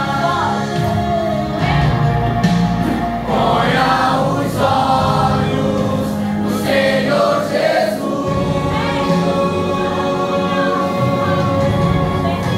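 Congregation singing a gospel worship song together, many voices at once over long held notes.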